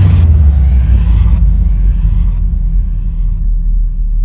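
A sudden deep boom, then a steady low rumble that carries on. Fading echoes of the hit come back about once a second. It is a cinematic sound effect laid over the music on an edited soundtrack.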